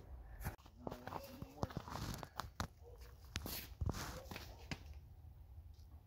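Footsteps in snow: a string of short, irregular steps, with a brief faint mumble of voice about a second in.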